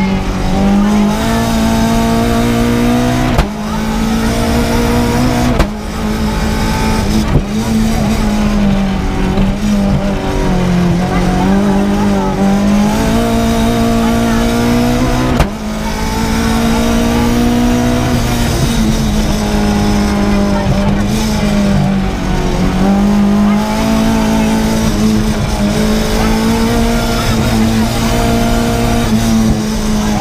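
Renault Clio Williams rally car's 2.0-litre 16-valve four-cylinder engine heard from inside the cabin, running hard at high revs, its pitch rising and falling with the throttle and gears. Sharp brief dips in the engine sound come about 3½, 6 and 15½ seconds in.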